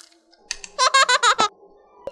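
A quick run of about eight high-pitched squeaky chirps in one second, starting about half a second in, each dipping in pitch.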